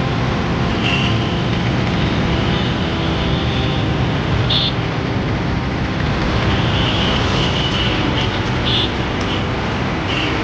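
Fire engine running steadily while it pumps a high-arcing water jet, its engine drone mixed with the rush of the spray.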